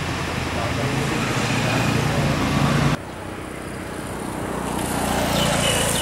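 Roadside traffic: vehicle engines and road noise, cut off suddenly about halfway through, then a motorcycle passing close by, swelling and fading near the end.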